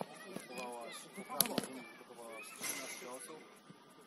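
Football players shouting and calling to each other during play, with two sharp thuds about a second and a half in, typical of the ball being kicked.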